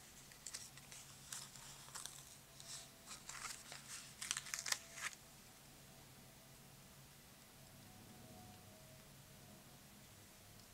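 Faint rustling and crinkling of a paper sticker sheet as a word sticker is peeled off its backing, a quick run of small crackles that stops about five seconds in.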